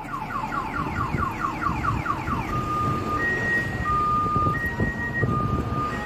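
Electronic warning sounder cycling through its tones: a quick run of rising chirps, about five a second, then from about halfway a slow alternation between a high and a low steady tone. A vehicle engine rumbles underneath.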